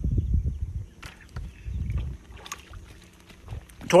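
Small boat being moved and handled on the water: two spells of low rumbling thumps in the first half, with scattered light clicks throughout.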